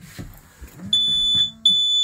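High-pitched electronic alarm beeping in long beeps of about half a second with short gaps, starting about a second in. It is an AIS collision alarm set off by a nearby ship flagged on the AIS.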